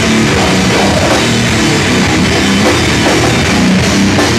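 Live heavy rock band playing loud, with distorted electric guitar and a pounding drum kit, heard from inside the crowd.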